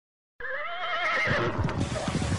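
A short animal call with a quickly wavering pitch, lasting about a second, followed by a low rumble.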